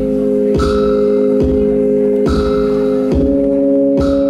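Live ambient electronic pop instrumental: a held keyboard chord over a steady beat of bright, mallet-like hits a little under one per second, with the chord shifting slightly about three seconds in. No singing.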